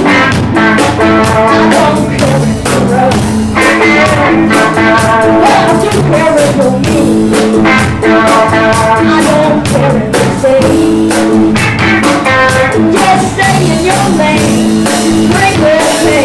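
A live rock band playing an original song: electric guitars and electric bass over a drum kit keeping a steady beat.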